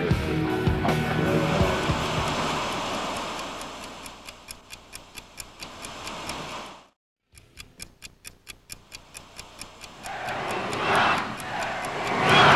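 Rock music fades out over the first few seconds, giving way to a rapid, even ticking at about four ticks a second, cut by a brief dead gap near the middle. Near the end a rushing noise swells up as the ticking continues.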